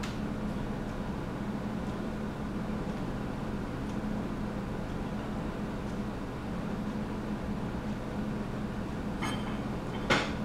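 A steady low hum of room background noise. Near the end come two small sharp clicks, like a metal lipstick case being handled.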